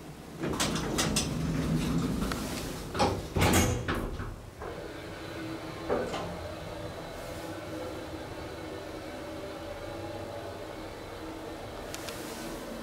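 KONE elevator's sliding doors rumbling along their track and shutting with two knocks about three seconds in. This is followed by a click a couple of seconds later and a steady low hum.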